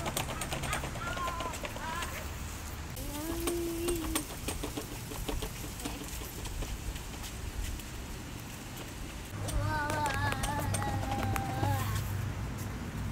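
A child's kick scooter rolling over brick pavers, with irregular clicks from its wheels crossing the joints. A young child's voice comes in now and then, longest and loudest for the last couple of seconds.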